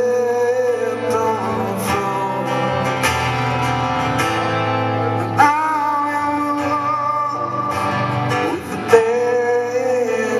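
Male voice singing long held, wavering notes over acoustic guitar in a solo acoustic rock performance, sliding up into a new sustained note about halfway through and again near the end.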